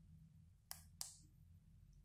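Near silence with room hum, broken by two short clicks about a third of a second apart, a little before the middle.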